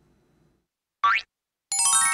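Cartoon sound effects: a quick upward pitch glide about a second in, then, near the end, a rapid downward run of ringing, bell-like tones that keep sounding together.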